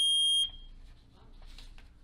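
A single loud electronic beep: one steady high tone lasting about half a second, cutting off sharply, then quiet room noise.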